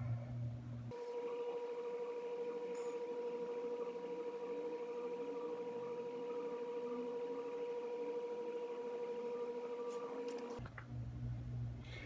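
A steady electronic tone of medium pitch, one unchanging note held for about ten seconds, starting about a second in and cutting off shortly before the end.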